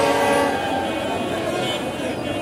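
A horn sounds a steady multi-tone note, loudest in the first half second and then fainter, over the chatter of a street crowd.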